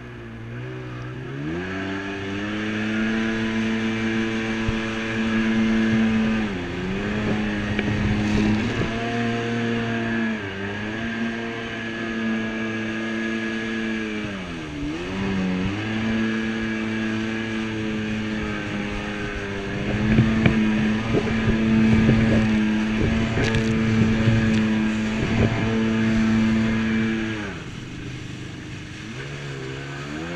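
Jet ski engine pulling away from low speed about a second and a half in, then running at high speed with three brief throttle dips and easing off near the end. Splashes and hull slaps on the water come through in the second half.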